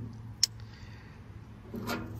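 A single sharp tap about half a second in, a pocket-knife tube being set down on a rusty metal panel, followed by faint handling rustle.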